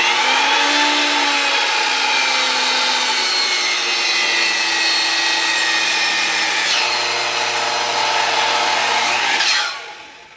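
Makita miter saw running and cutting through wood in one long, loud, steady pass, its motor tone shifting as the blade works under load. It trails off near the end as the saw is switched off.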